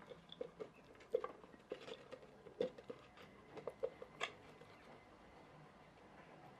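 Faint, scattered light clicks and crinkles of a small plastic-bottle rubber-band car being handled, its thin plastic and skewer axle turned in the fingers.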